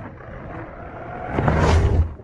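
A Rover 25 hatchback driving off and accelerating across snow past the camera, its engine and tyres growing steadily louder and loudest near the end.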